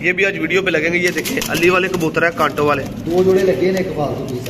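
Domestic fancy pigeons cooing close by, several warbling coos following and overlapping one another.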